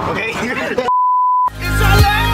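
A single pure, steady beep lasting about half a second, alone in dead silence after an abrupt cut. Electronic music with a deep steady bass and a wavering high line begins right after it.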